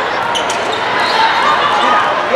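Volleyball being struck during a rally, a sharp hit about half a second in, over steady chatter and calls from players and spectators.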